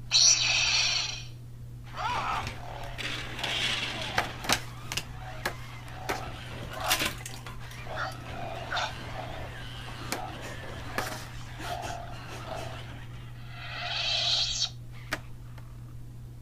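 Animatronic Yoda toy moving under its own motor, with a loud hissing burst at the start and another near the end, while the toys it knocks over clatter and knock on the table in a run of sharp clicks. A steady low hum runs underneath.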